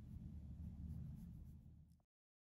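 Faint low rumble of room tone, fading out near the end and cutting off suddenly into silence.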